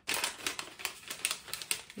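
Paper sewing pattern being folded and pressed flat by hand on a wooden tabletop: irregular rustling with many small clicks and taps.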